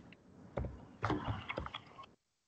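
Computer keyboard and mouse clicks: a quick, irregular run of light clicks and taps as a text box is opened and a word is typed.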